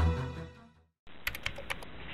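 Background music fading out, then a moment of silence, then a quick run of about six sharp typing clicks.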